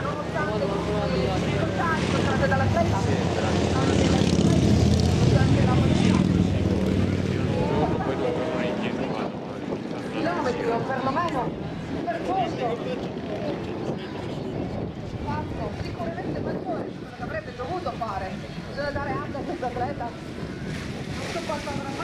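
Indistinct talking of people, over a steady low motor hum that is loudest in the first several seconds and fades out about eight seconds in.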